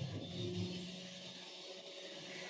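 Faint low hum of a few steady held tones that fade during the first second, over a light background hiss.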